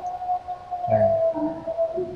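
A steady, unwavering hum-like tone that cuts off just before the end, with a brief low murmur of voice about a second in.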